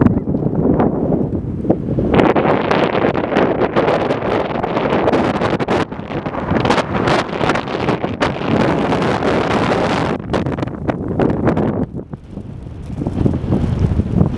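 Strong wind buffeting the camera microphone in loud, uneven gusts, growing stronger about two seconds in and dropping briefly near the end before picking up again.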